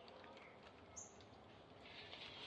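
Near silence: faint background hiss, with a single brief, high bird chirp about a second in.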